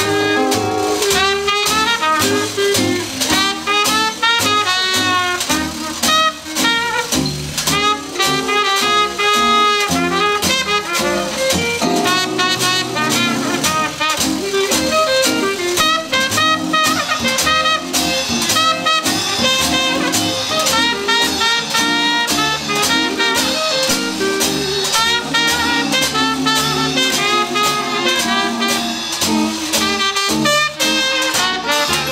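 Small hot jazz band playing an instrumental chorus: cornet and clarinet carrying the melody over string bass, rhythm guitar and a washboard scraped and tapped in steady swing time.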